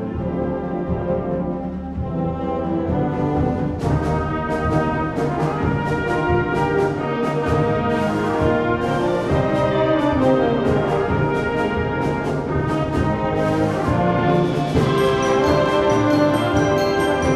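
Wind band playing, led by brass in sustained chords. About four seconds in, regular percussion strikes join. Near the end a cymbal swell rises as the music gets louder.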